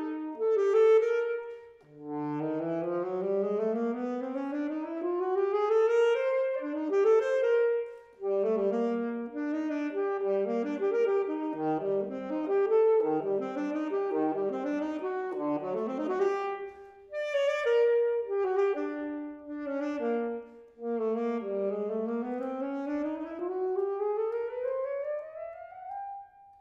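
Solo alto saxophone playing a fast unaccompanied étude: quick rising runs and rapid note figures, broken by short pauses about 2, 8 and 17 seconds in, with a final run climbing near the end.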